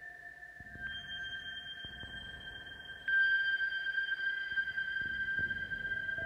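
Moog Subharmonicon synthesizer playing slow generative ambient music: a few sustained, steady tones that shift about a second in and swell louder with a new note about three seconds in. The notes are driven by an Instruo Scion reading the biodata of a Pilea peperomioides plant.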